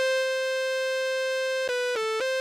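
Analogue synthesizer tone from the Korg Monotribe's output fed into the Arturia MicroBrute's external audio input: one steady, buzzy held note, which steps down in pitch twice near the end.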